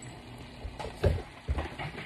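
Wet mushrooms, garlic and onions sizzling in a hot wok, giving off heavy steam, with a couple of low knocks about a second in.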